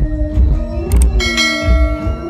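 Subscribe-button overlay sound effect: a mouse click about a second in, then a bright bell chime that rings out, over loud background music with singing.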